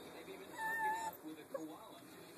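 A puppy gives one short, high whine, steady with a slight waver and about half a second long. It is followed by a few faint small noises and a tick.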